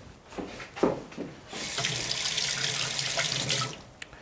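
A few light knocks, then a kitchen tap runs water into the sink for about two seconds and is turned off just before the end.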